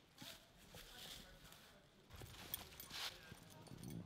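Near silence: faint outdoor background with a few soft, scattered clicks and rustles.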